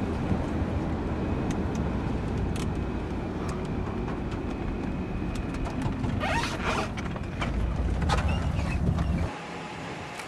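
Steady low rumble of a car running, heard from inside the cabin, with scattered clicks and a brief rustle of handling about six seconds in. The rumble stops abruptly near the end.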